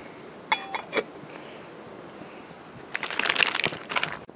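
A metal lid set onto a steel cook pot with a sharp clink and a brief ring about half a second in, then a second knock. Near the end, a thin foil windscreen crinkles as it is wrapped around the pot on the tin-can stove.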